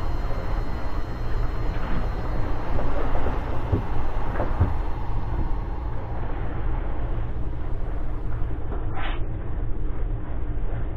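A steady low rumble, with a short, higher rustle about nine seconds in.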